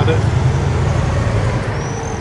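Steady low rumble of motor-vehicle traffic on the street.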